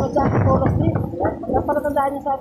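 Indistinct talking over the low rumble of a moving vehicle; the rumble fades out about halfway through while the voice carries on.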